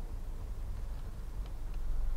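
Low, steady rumble of a 2015 Volkswagen Jetta with the 1.8 turbo engine, running and rolling slowly, heard from inside the cabin.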